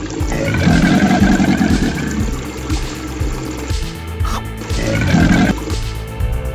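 Background music with a cartoon animal roar sound effect: a long rough growl starting about half a second in, and a shorter one near the end.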